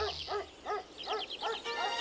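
A cartoon monkey's chattering call: about six quick cries, each rising and falling in pitch, over faint background music.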